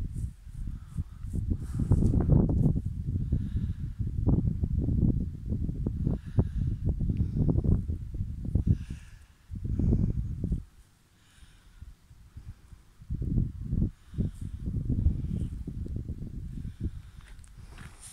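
Irregular low rumbling and crackling noise on the phone's microphone, coming in long gusts with a near-quiet gap in the middle.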